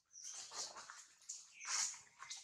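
Macaque calls: a run of short, high-pitched squeaks, the loudest near the end.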